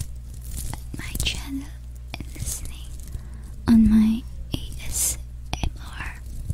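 Soft close-mic ASMR whispering with scattered small mouth clicks, and one brief hummed voice sound about two-thirds of the way in.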